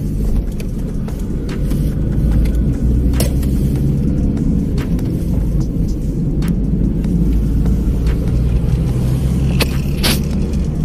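A car driving along a road, heard from inside the cabin: a steady low rumble of engine and tyres, with a few faint clicks.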